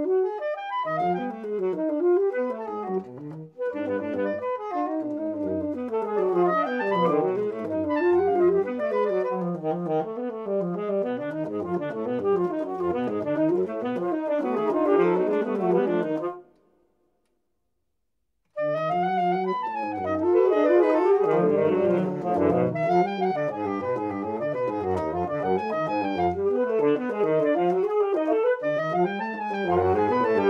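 Saxophone quartet (soprano, alto, tenor and baritone) playing a busy passage with all four voices moving. Just past the middle it breaks off into about two seconds of full silence, then all four come back in together.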